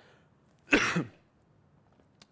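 A man's single short cough about three-quarters of a second in, lasting about a third of a second with a falling voiced tail, against quiet room tone.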